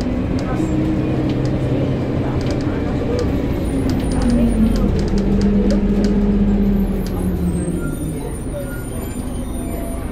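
Engine of First Bradford single-deck bus 31765 heard from inside the saloon while under way: the engine note rises and falls, with light rattles from the interior. About seven seconds in, the engine note drops and the sound quietens.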